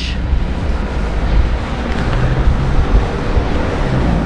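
Wind rumbling on the microphone over outdoor street ambience, with a low steady hum joining about two seconds in.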